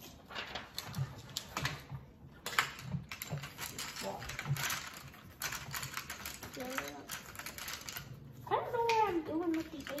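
Felt-tip markers and coloured pencils scratching and tapping on paper in many short strokes, with sheets of paper rustling. A child's voice is heard briefly near the end.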